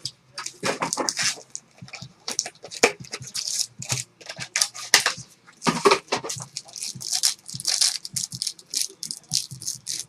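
Plastic card-pack wrappers and sleeves crinkling and rustling as trading cards are handled, in quick irregular crackles throughout.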